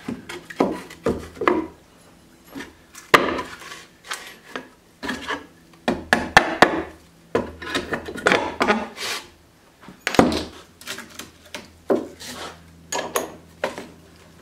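Hammer blows on a tool driven between the slats of an old, weathered log-framed wooden swing to pry it apart. The knocks come irregularly with short pauses, the loudest about three seconds in.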